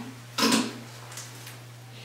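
A brief rasping burst of zinc oxide athletic tape being peeled and handled about half a second in, over a low steady hum.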